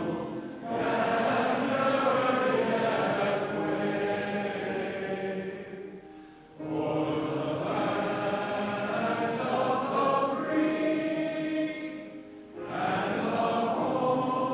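Singing: long held notes sung in phrases, with short breaks between phrases about six seconds in and again near the end.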